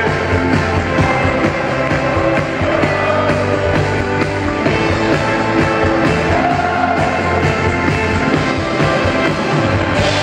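Live acoustic band with drums and orchestra playing loudly, recorded from within the audience, with a steady beat.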